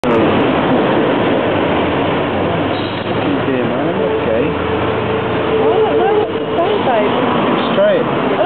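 Several people talking at once over steady street noise, the voices overlapping into a babble; one voice holds a long, steady note around the middle.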